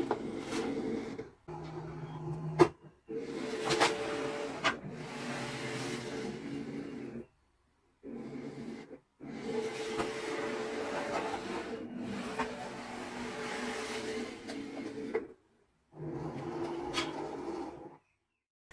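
Cricut Explore 3 cutting machine's motors whirring as the rollers draw in a sheet of Smart Vinyl and measure its length. The motor sound comes in several runs separated by short, abrupt gaps, with a few clicks.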